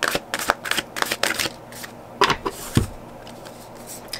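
A deck of tarot cards being shuffled and handled by hand over a wooden table: a quick run of card snaps and slides, a few more later, then a soft knock as the deck is set down.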